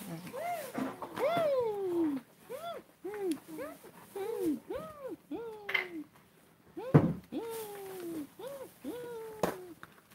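A pet animal crying out again and again: about a dozen short calls, each rising and falling in pitch. A single sharp knock comes about seven seconds in.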